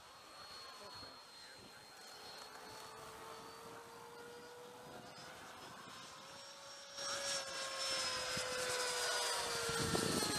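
Hobby King Sky Sword RC jet in flight, its electric ducted fan giving a steady high whine. The whine grows clearly louder about seven seconds in, its pitch rising slightly and then falling.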